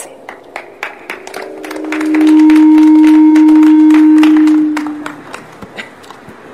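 Public-address microphone feedback: a steady low howl that builds up from about a second in, holds loud for a couple of seconds and dies away near the five-second mark. Scattered clicks and knocks from the handheld microphone being handled run through it.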